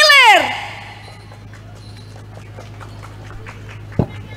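A woman's amplified voice draws out the last word of an announcement in a long call that rises and then falls away within the first half second. Then comes a quiet stretch of open-air ambience under a steady low hum from the sound system, with a single sharp click near the end.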